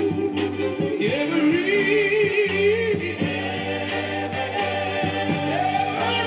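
Gospel soul 45 rpm single played on a turntable: a singer holding long, wavering notes over a steady bass line, with a higher held note coming in near the end.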